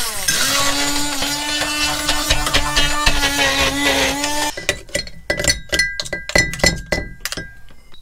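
Small electric stick hand blender running in a ceramic jug of pesto ingredients, a steady motor whine that cuts off about four and a half seconds in. After it stops comes a run of sharp clinks and knocks against the jug.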